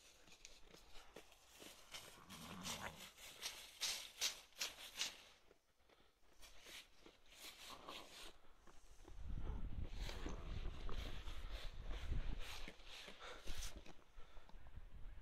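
Close rustling and crackling as sheep move over dry fallen leaves with their wool brushing the phone, with a low rumble joining from about nine seconds in.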